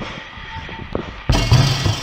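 Background music with steady held tones, quiet at first and suddenly much louder from about a second and a half in, with a single thump about a second in.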